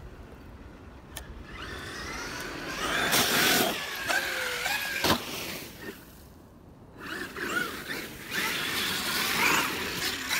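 Traxxas X-Maxx electric RC monster truck running over snow and dirt: its motor and drivetrain whine glides up and down with the throttle, over the gritty noise of the tyres. There is a sharp thump about five seconds in, a quieter spell after it, and then the truck speeds up again.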